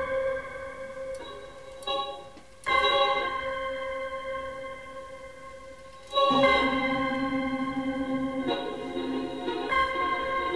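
Live electronic music: sustained, organ-like synthesizer chords. A new chord enters about a quarter of the way in and another just past halfway, each fading slowly, with a lower layer of tones joining near the end.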